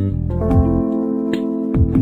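Background music: held keyboard chords with sharp percussive hits.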